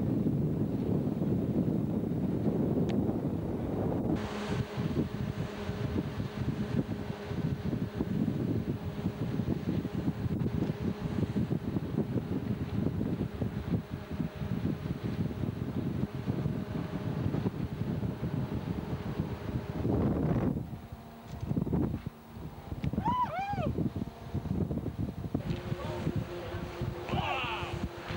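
Wind rushing over a camcorder microphone on a fast-running motor cruiser, over the steady drone of its twin Volvo Penta 4.3-litre V6 petrol engines at speed. The noise dips briefly about four fifths of the way through, and a few short high rising-and-falling tones sound shortly after.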